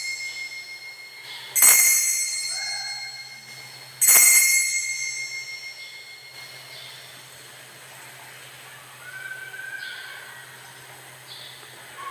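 Small altar bell struck twice, about one and a half and four seconds in, each strike ringing out and fading slowly, with the fading ring of an earlier strike at the start. This is the bell rung at the elevation of the consecrated host at Mass.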